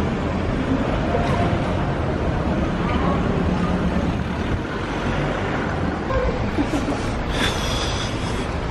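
City street traffic: a steady rumble of passing vehicles, with a car driving past close by.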